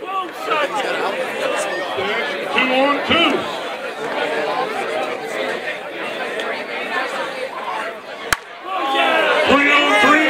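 Several people chatting in the background, with one sharp crack of a bat hitting a softball about eight seconds in.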